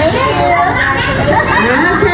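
Many children's voices chattering and calling over one another, with adult voices mixed in.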